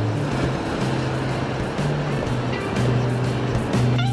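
Background music, with bass notes going on under a steady wash of noise.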